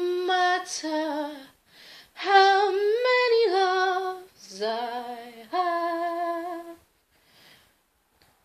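A woman singing unaccompanied in three held, melodic phrases with short breaks between them. She stops a little before the end.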